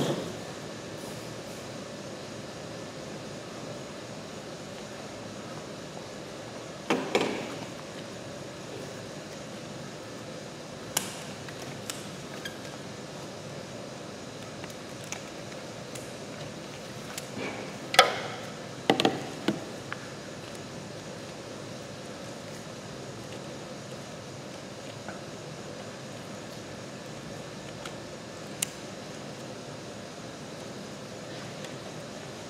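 A metal food scoop clinking and knocking against a stainless steel mixing bowl now and then while a dense dough is scooped out: a few sharp knocks, loudest at the very start and twice in quick succession about two-thirds of the way through, over a steady background hum.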